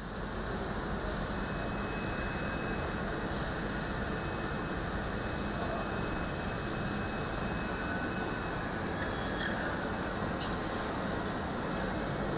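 Steady factory machinery noise from an egg-handling line, with a high hiss that switches on and off every second or two.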